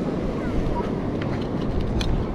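Wind buffeting the microphone over a steady low rumble of surf, with a few light clicks in the second half.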